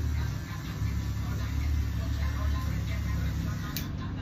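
Electric hair clippers running with a steady low buzz, and a short click near the end.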